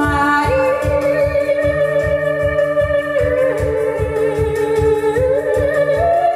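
Female voice singing long wordless notes that glide slowly up and down, over handpan played in an even low pulse of about four strokes a second with steady held tones beneath.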